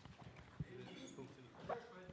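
Faint room sound with a little quiet, off-microphone speech and a few soft knocks, typical of a microphone being handled on a panel table.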